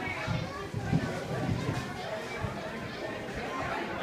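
Indistinct chatter of several people talking in the background, children's voices among them.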